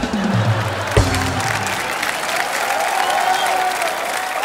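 Studio audience applauding, with background music played over it.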